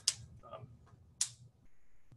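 A man's brief hesitant 'um', with two short hissing sounds, one right at the start and one just past a second in.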